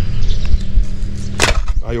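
Low rumbling noise with a single sharp knock about a second and a half in.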